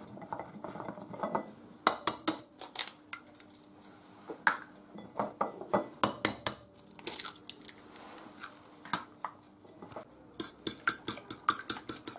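Scattered sharp knocks and taps as eggs are cracked and opened over a porcelain plate. About ten seconds in, a fork starts beating the eggs against the plate in a quick, even clicking, about six strikes a second.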